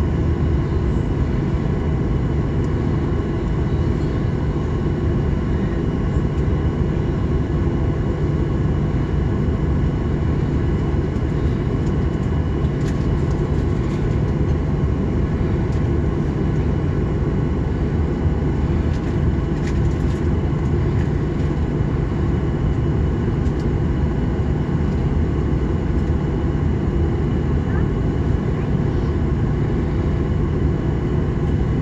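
Steady cabin noise of a Boeing 737-800 taxiing on its CFM56 engines at low thrust: a constant low hum with several steady tones over it. A few faint clicks come through around the middle.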